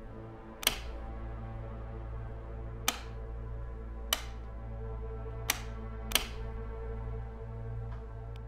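A wall light switch clicked five times at uneven intervals without the lights coming on, because the house has no power, over a low sustained drone of film score.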